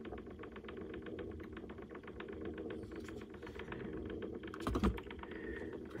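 Small motor of a rotating display turntable running: a rapid, even clicking over a low steady hum. Near the end there is a single louder knock as the model car is handled on it.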